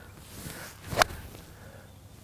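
A golf iron striking a ball off the turf: a short swish of the downswing, then one sharp, crisp click of impact about a second in. It is a solidly struck shot, called the most solid shot of the day.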